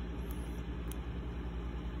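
Steady low background hum with a faint click about a second in.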